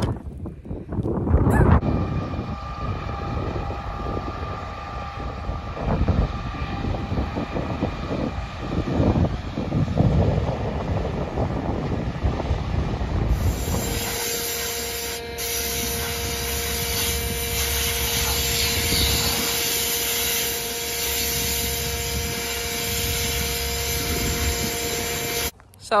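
Combine harvester cutting wheat: first wind gusting on the microphone with a faint machine whine, then, about halfway, a steady machine drone with a constant hum that cuts off suddenly near the end.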